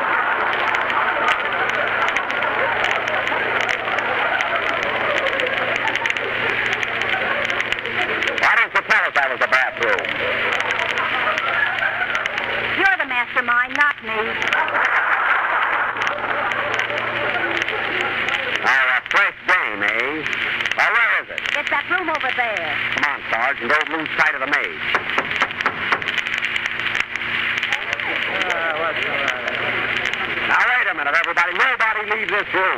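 Studio audience laughing and applauding at length, heard on a narrow-band 1930s radio broadcast recording. It is a steady crowd roar with individual laughs rising out of it here and there.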